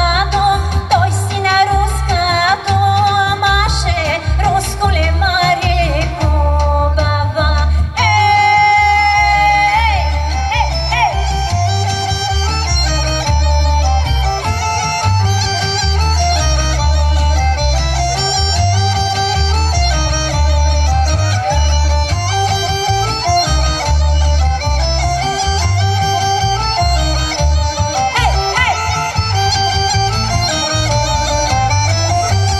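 Bulgarian folk song played loud through PA speakers: a woman's voice sings over a backing track with a steady beat for about the first eight seconds, then gives way to an instrumental break carried by a held, ornamented melody over the same beat.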